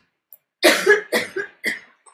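A person coughing: a quick run of short, harsh coughs lasting about a second.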